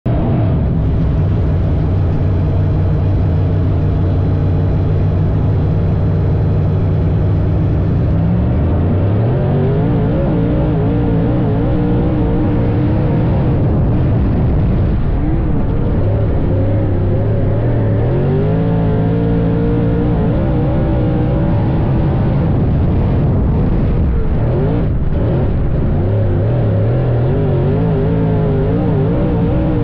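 Dirt late model race car's V8 engine running at steady revs for about eight seconds, then revving up and repeatedly rising and falling in pitch as it accelerates and lifts off.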